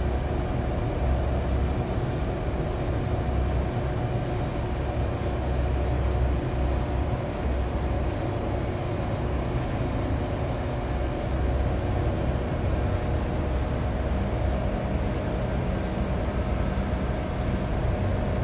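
Steady hum of running building machinery with an uneven low rumble underneath and a few faint steady tones in it.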